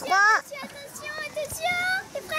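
A high voice calls out a drawn-out "three" at the end of a countdown. Quieter voices follow, then a short high call rising in pitch near the end.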